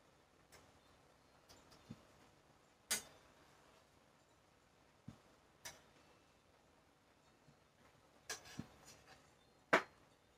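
Scattered quiet clinks and taps of a utensil against a pan while stirring on a stovetop, about a dozen separate knocks with gaps between them.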